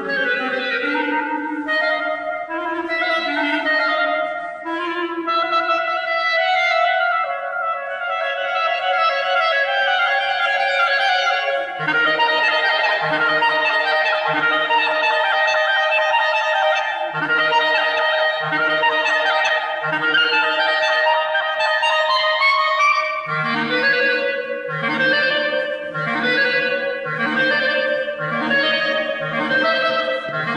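Clarinet playing a slow, sustained melody live. About twelve seconds in, a low, evenly pulsing accompaniment comes in beneath it and quickens near the end.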